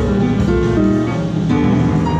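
Live small-group jazz: a grand piano playing a run of single notes over plucked double bass and drums.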